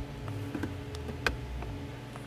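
A few faint clicks from a plastic powered USB hub and its cable being handled, with one sharper click about a second and a quarter in, over a steady low hum.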